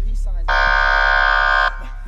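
A steady buzzer-like tone, one flat note with many overtones, comes in about half a second in, holds for just over a second and cuts off sharply. Under it a deep bass note from the hip hop beat fades away.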